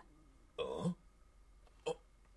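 A gruff throat-clearing grunt of about half a second, followed near the end by a brief short vocal sound.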